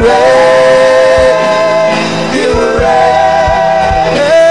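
Gospel worship song: a voice holding long sung notes that glide from one pitch to the next, over instrumental backing with drum hits.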